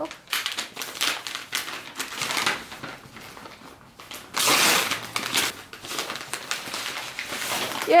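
Wrapping paper crinkling and rustling as a present is unwrapped, with a louder stretch of paper noise about halfway through as the paper is pulled away.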